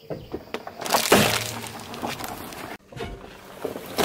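A car tyre rolling onto a sealed, air-filled plastic croissant wrapper: the packet bursts with a sudden loud pop about a second in, followed by a fading crackle of crushed plastic.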